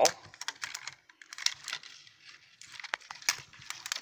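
Fingers and nails picking at the plastic tear strip of a Hairdooz capsule bottle: scattered small plastic clicks and crinkles, the strip hard to get off.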